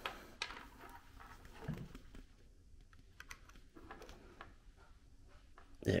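Faint, scattered small clicks and rattles of a USB cable being handled and plugged into a laptop's port.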